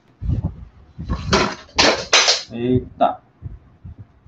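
Pen drawing on the paper of a sketchbook cover: three quick, scratchy strokes in a row, followed by a brief spoken sound.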